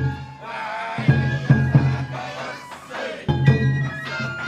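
Japanese festival hayashi: taiko drum beats under a high bamboo flute melody, with voices singing along.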